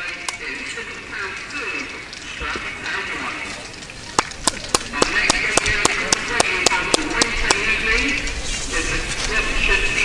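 Spectators' voices at a football ground, with one person close to the microphone clapping about four times a second for some three seconds, starting about four seconds in.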